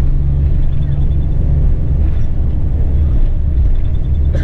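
Steady low rumble of a coach's engine and tyres on the road, heard from inside the passenger cabin at highway speed. A low hum in the rumble drops out a little under halfway through.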